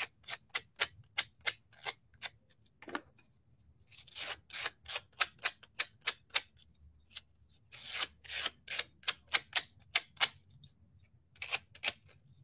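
Painted wooden craft pieces being hand-sanded along their edges to show the bare wood. The short scratchy strokes come about four a second, in three runs with gaps: one at the start, one from about four to six and a half seconds, and one from about eight to ten seconds, with a few more strokes near the end.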